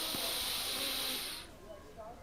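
A steady hiss, strongest high up, that fades out about a second and a half in.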